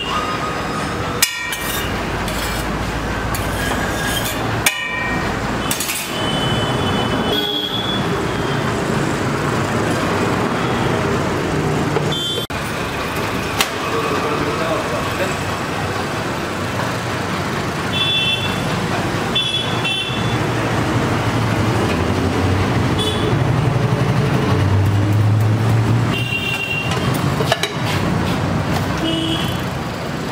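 Busy street traffic running steadily, with vehicle horns tooting briefly several times and voices in the background.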